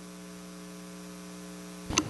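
Steady electrical mains hum in the meeting room's microphone and recording system, a low buzz with no speech over it. A short click comes near the end.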